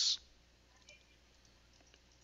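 A few faint, scattered computer keyboard keystrokes, with the hissed end of a spoken word at the very start.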